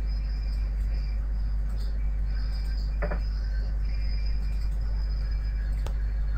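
Steady low electrical hum and background hiss with a faint high-pitched whine, broken by a single short click about three seconds in.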